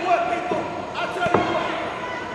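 A few hollow thuds on a wrestling ring's boarded floor, the loudest a little over a second in, with a voice calling out in the hall.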